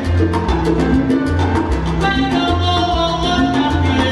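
Live salsa band playing an instrumental passage with a steady beat: trumpets, timbales, congas and piano over a repeating bass line.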